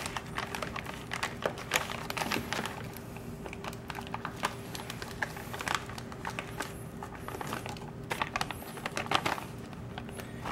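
Plastic one-gallon Ziploc bag crinkling and crackling in irregular bursts as it is pressed flat to squeeze the air out and its zipper seal is pressed shut.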